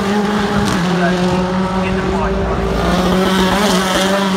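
BTCC touring car engines running hard as the cars pass the corner, a steady engine note held at nearly constant pitch that dips slightly about a second in.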